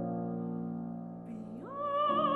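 Grand piano chords ring and fade during a pause in the singing. Near the end the soprano comes back in, sliding up into a held note with vibrato.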